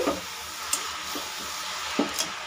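Grated carrots and sugar sizzling in ghee in a steel kadhai while a metal spoon stirs them, with a light clink of the spoon against the pan about two-thirds of a second in.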